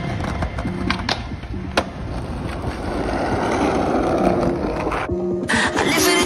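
Skateboard wheels rolling on paving, with sharp clacks of the board about a second in and again near two seconds, then a swelling rumble of wheels that cuts off about five seconds in. Hip hop music plays underneath.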